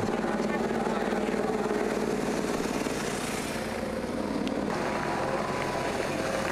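Escort motorcycles' engines running in a steady drone as they ride slowly along the course.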